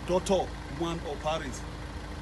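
A man's voice in two short phrases over a steady low rumble with a faint constant hum.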